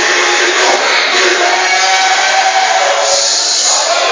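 Loud, steady church worship music with a congregation's voices mixed in.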